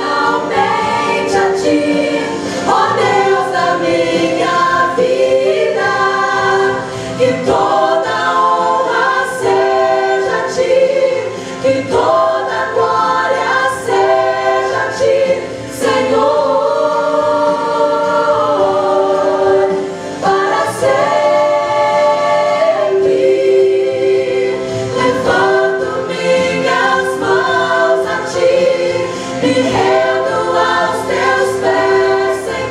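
A women's vocal group singing a Portuguese-language gospel worship song together in harmony, with several long held notes.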